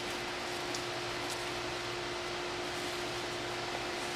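Steady background hiss with a faint, constant low hum and no clear events.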